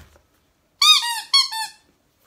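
A rubber squeaky dog toy squeezed several times in quick succession, about a second in: short, loud squeaks that each rise and fall in pitch.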